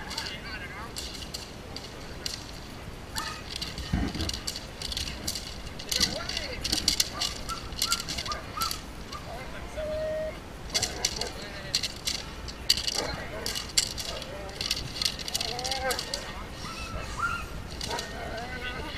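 German shepherd gripping and tugging on a helper's bite sleeve in protection bitework: repeated scuffling, rustling and knocking of the padded suit, leash and harness, with short voice calls in between.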